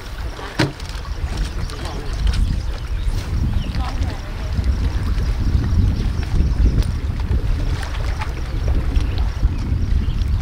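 Wind buffeting the microphone as a heavy, uneven low rumble over the lakeshore, with a sharp click about half a second in.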